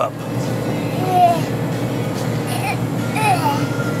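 Grocery store ambience: a steady low hum by the refrigerated dairy cases, with faint background music and a few faint, brief voice sounds.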